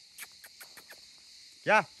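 A man calling a dog with a loud, drawn-out "gel" ("come") that rises and falls in pitch near the end. Before it there are only faint scattered clicks over a steady high-pitched hiss.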